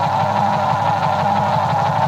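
A loud, steady mechanical drone with a fast, even low throb, of the engine-idling kind.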